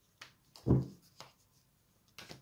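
Tarot cards being handled and one laid on a velvet-covered table: a few light card clicks, with one louder dull thump just under a second in.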